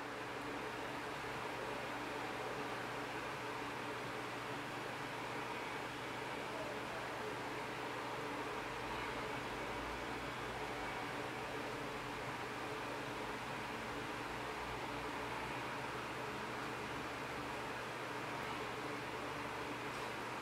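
Steady background hiss with a faint low hum, like a fan or room noise, unchanging throughout, with no distinct taps or other events.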